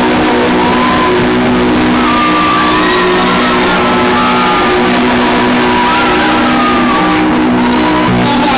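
A rock band playing loudly in a live set. Sustained chords ring under higher notes that slide up and down in pitch.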